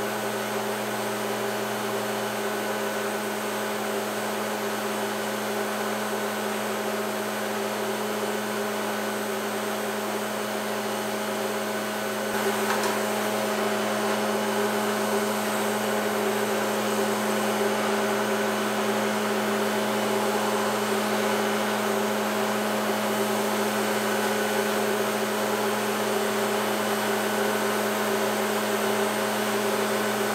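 Electric motor of a table-saw tenon cutter running unloaded: a steady hum, growing slightly louder about twelve seconds in.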